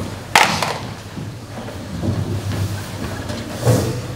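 Room noise of a large hall with a waiting audience, broken by two sharp knocks, one just after the start and one near the end.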